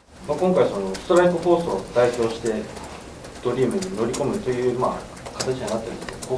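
Speech only: a man talking steadily off-camera, most likely the interviewer putting a question in Japanese.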